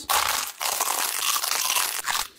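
Biting into and crunching a giant blue Takis rolled tortilla chip: a dense crackling crunch, broken briefly about half a second in and then continuing.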